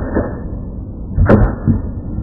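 Wooden boards cracking under taekwondo kicks: a light knock just after the start, then two sharp cracks close together about a second and a quarter in.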